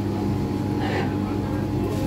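Steady low machine hum of kitchen equipment, with a brief soft rustle about a second in.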